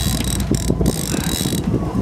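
Trolling reel being cranked, its gears ratcheting in a fast run of clicks, as it winds in a fish on a line that also drags a submerged planer board.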